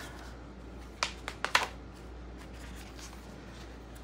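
Glossy magazine pages being flipped by hand, with a few quick paper snaps between one and two seconds in.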